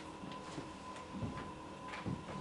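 Faint, irregular taps and paper rustles as sheets of paper are handed over and a person steps away, over room tone with a steady high electrical hum.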